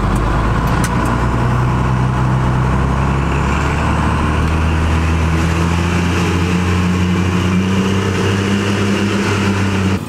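First-gen Dodge Ram's 5.9 12-valve Cummins diesel running steadily under way, heard from inside the cab over road noise.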